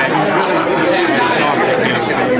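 Many people talking at once: a steady hubbub of overlapping conversation, with no single voice standing out.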